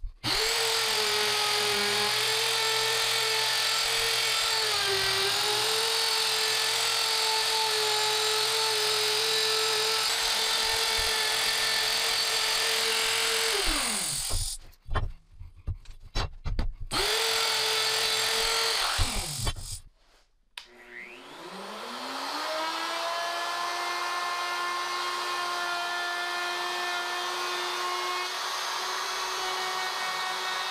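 Handheld electric router running at full speed, cutting a recess into a hardwood tabletop for a steel joining plate. It winds down about 14 s in, runs briefly again and stops near 19 s. About 20 s in, a router spins up with a rising whine and then runs steadily.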